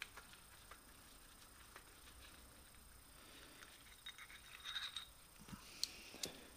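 Near silence with faint room tone, then a few faint clicks and light handling noises near the end as the Allen key comes away from the socket head bolts on the lathe's change gears.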